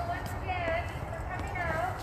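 Raised voices calling out in the background, heard in two short bursts, over a steady low rumble of wind and handling noise on a phone's microphone.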